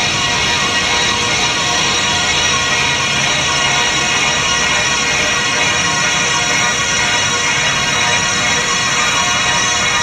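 Loud house dance music played over a club sound system, with sustained synthesizer chords held steady through the whole stretch and no vocals.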